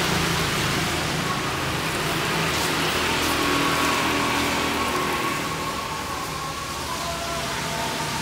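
A small pond fountain splashing steadily, its jet bubbling up through the water surface.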